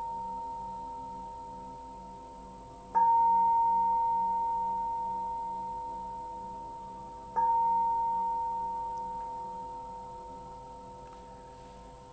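Meditation bell struck twice, about 3 s and 7.5 s in, each strike ringing with a clear steady tone that slowly fades. A strike from just before is still dying away at the start. The bell marks the close of the guided meditation.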